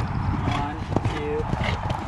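Horse cantering on sand arena footing toward a jump, its hoofbeats coming as a few dull knocks over a steady low rumble.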